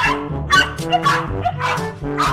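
Dog barking several times over background music.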